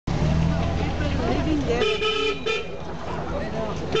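A vehicle horn honks twice in a crowded street, a toot of about half a second roughly two seconds in and a short one right after, over the low running of an engine and the voices of people around.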